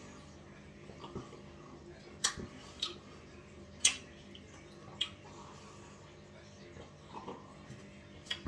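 Mouth sounds of someone drinking a thick milkshake from a glass: quiet sips and swallows, with a few short sharp smacks spread over the middle few seconds.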